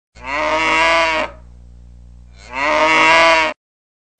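A cow mooing twice: two long calls of about a second each with a pause between, over a faint low steady hum. The sound cuts off suddenly just before the end.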